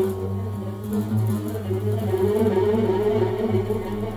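Duet of oud and viola: a steady low note held throughout under a wavering, sliding melody in the middle register.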